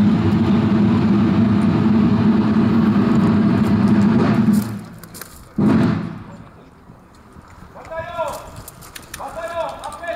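Ceremonial volley of blank musket fire from a long line of marchers: a rolling, continuous rumble of shots for about five seconds that breaks off suddenly. About a second later comes a second, shorter burst of shots that dies away. A man's voice calls out twice near the end.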